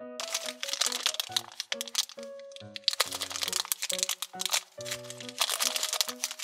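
A thin plastic bag crinkling as it is handled and a small plastic toy ring is worked out of it, over a light, bouncy background tune.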